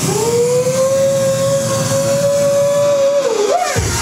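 Background music in which one long high note is held steady for about three and a half seconds, then bends down and wavers near the end.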